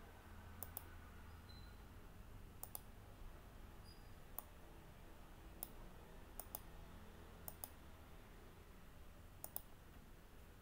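Computer mouse button clicking, about a dozen sharp clicks, most of them in quick pairs, over faint low background noise.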